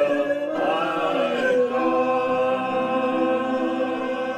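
Men's and a woman's voices singing a hymn together. The notes change in the first second or so, then one long note is held through the rest.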